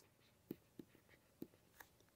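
Near silence, broken by a few faint ticks and scratches of a stylus writing on a tablet.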